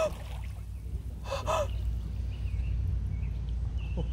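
A short, breathy gasp about a second and a half in, over a low steady rumble.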